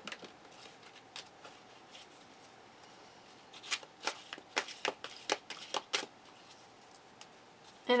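Deck of cards being shuffled by hand: soft, scattered card flicks, with a busier run of quick snaps between about three and six seconds in.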